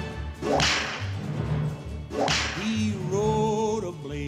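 Film soundtrack playing over the room's speakers: two sharp swishing sounds, about half a second and two seconds in, then a voice singing a held, wavering note with vibrato near the end.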